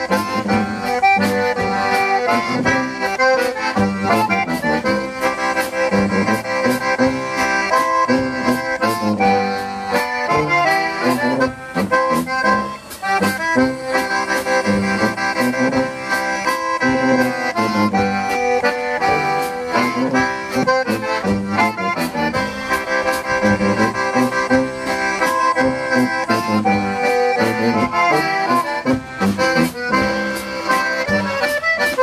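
Live polka music: a concertina carries the melody over a tuba bass line and a drum kit keeping a steady beat with cymbal and drum strikes.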